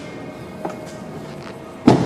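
A car door shut with one heavy thud just before the end, after a light click about two-thirds of a second in, over a faint steady background.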